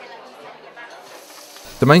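Low dining-room chatter, giving way about halfway through to a steady hiss of duck breasts sizzling in frying pans on a gas range.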